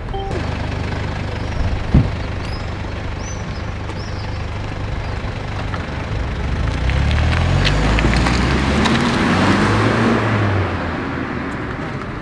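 A car engine running with road noise, swelling about seven seconds in as the car moves off and easing near the end. One sharp thump comes about two seconds in.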